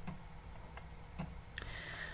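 A few faint, separate clicks at a computer, about four in two seconds, over a low steady room hum.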